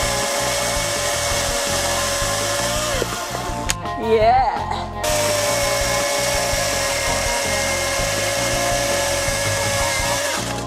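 Milwaukee M18 FCHS cordless brushless chainsaw cutting through an ash log: a steady high whine from the electric motor and the chain going round, with no engine putter. The whine sags about three seconds in, and there is a brief louder, wavering stretch around four seconds before the steady cutting whine resumes.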